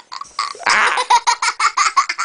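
A young boy laughing hard: after a brief lull, a breathy burst of laughter, then a quick run of short ha-ha pulses.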